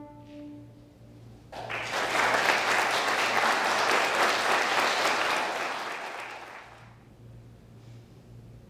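A final bowed-string note fades out, then an audience applauds, starting about a second and a half in, building and dying away near the end.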